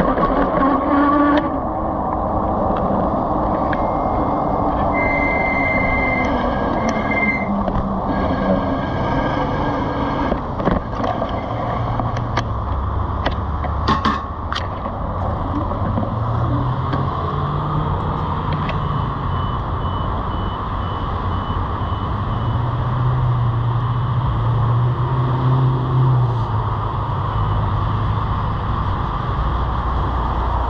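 Steady street traffic and riding noise from a moving electric bike, with the low hum of vehicle engines rising and falling as they pass. A run of short high beeps sounds about two-thirds of the way through.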